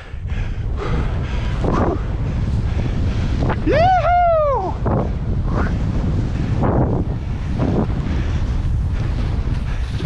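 Wind buffeting the microphone of a head-mounted camera while skis run through deep powder snow, a steady loud rush throughout. About four seconds in, a voice gives one high whoop that rises and falls twice.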